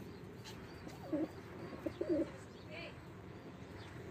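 Domestic pigeons cooing: a few short, low coos between about one and two and a half seconds in.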